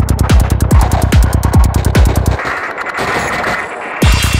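Psytrance track: a steady four-on-the-floor kick drum with bass and hi-hats, about three beats a second. About two seconds in, the kick and bass cut out for a short break of hissing synth texture.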